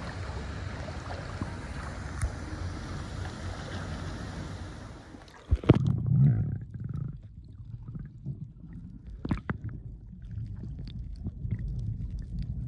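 A steady open-air hiss of water and air over a swimming pool, which about five and a half seconds in gives way to a sudden loud thump and then the muffled low rumble of a camera held underwater, with scattered sharp clicks.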